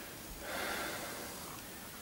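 A soft breath out near the microphone, swelling and fading about half a second in, over faint room hiss.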